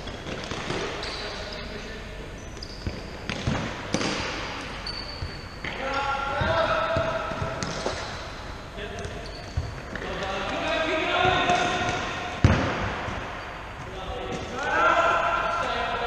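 A football being kicked and bouncing on a hardwood sports-hall floor, sharp echoing thuds at irregular intervals, the loudest about twelve and a half seconds in, with players shouting to one another across the hall.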